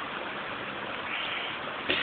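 Steady rushing of a creek's running water, a little stronger about a second in.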